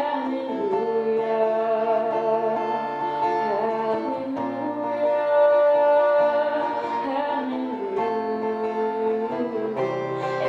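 A woman singing long held notes while playing an acoustic guitar.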